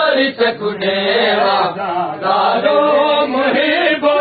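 Many men's voices chanting a noha together, a Shia mourning lament sung by a matam party; the chant runs on with only brief dips.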